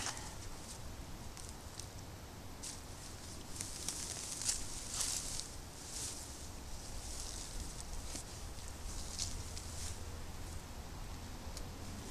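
Soft, scattered rustling and scraping of leafy sweet potato vines and loose soil as the plant is pulled up by hand from ground loosened with a garden fork.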